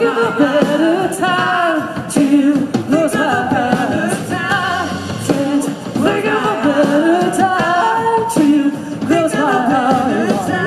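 Live indie rock band playing: sung vocals over electric guitars, bass, drums and keyboard, with a steady drum beat.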